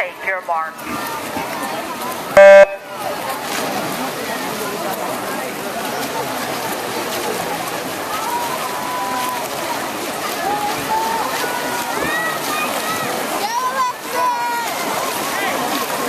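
Electronic start signal for a swim race: one short, loud beep about two and a half seconds in, after a brief hush. Spectators then shout and cheer as the swimmers race.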